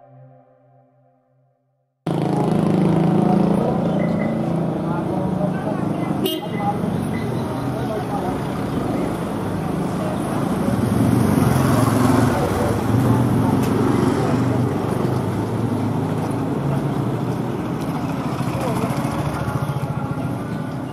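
Soft synth music fades out into a moment of silence, then outdoor street ambience begins abruptly: a steady mix of indistinct voices and traffic, with a sharp click about six seconds in.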